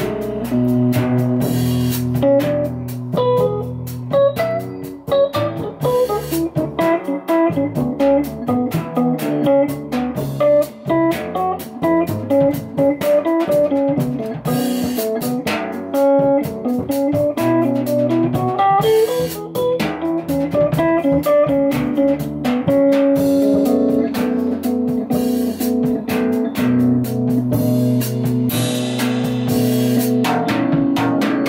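Jazz piano trio playing: a Rhodes electric piano runs a quick line of single notes that climbs and falls over held low notes, with upright double bass underneath and drums and cymbals keeping time with brushes or sticks.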